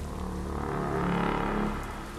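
Steady rain under a low sustained drone that swells up about half a second in and then holds.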